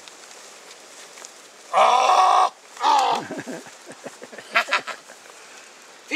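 A loud, drawn-out cry about two seconds in, followed by a shorter cry that falls in pitch and another brief cry near the end.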